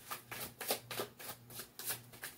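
A deck of tarot cards being shuffled by hand: a quick, even run of soft card strokes, about six a second.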